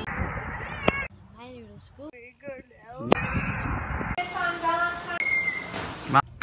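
Voices, among them short, high, wavering calls in a quieter stretch in the middle, set between two spells of steady background noise.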